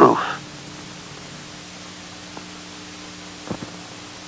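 Steady hiss of an old recording's background noise, with a faint low hum and a few small clicks near the end.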